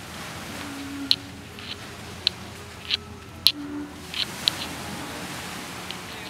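Night-time outdoor ambience: a steady hiss with scattered short, sharp high-pitched chirps, about eight of them at irregular intervals.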